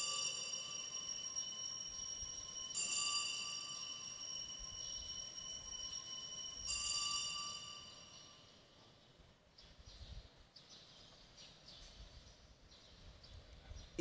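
Altar bells rung three times, a few seconds apart, marking the elevation of the chalice at the consecration; each ring holds a cluster of high metallic tones that lingers and fades.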